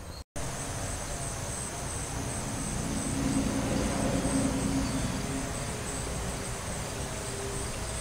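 Outdoor summer ambience: insects keep up a steady high chirring over a low rumble that swells a little around the middle.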